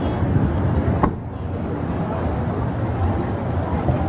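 Street traffic: a steady rumble of car engines and road noise, with a sharp click about a second in.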